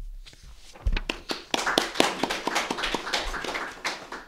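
Audience applauding, starting about a second in and fading near the end.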